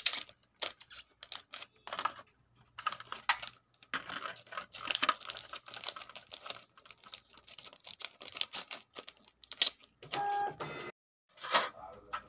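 Gold rings and jewellery handled in a plastic display tray: irregular clicks, taps and light rattles of metal against plastic. About ten seconds in, a short steady tone sounds for about a second.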